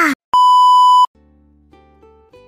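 A loud, steady electronic beep of the censor-bleep kind, lasting under a second and cutting off abruptly, just after the tail of a noisy whoosh. Soft plucked-string music follows.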